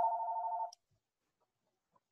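A steady electronic tone, held at one pitch, that cuts off suddenly under a second in, followed by complete silence.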